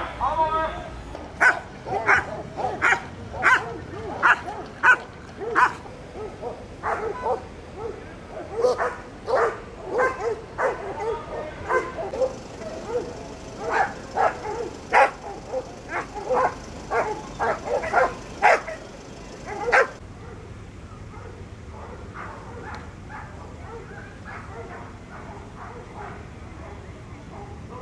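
A dog barking over and over, sharp loud barks about two a second, which stop suddenly about twenty seconds in.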